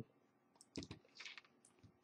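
Faint computer keyboard typing: a few soft, scattered key clicks.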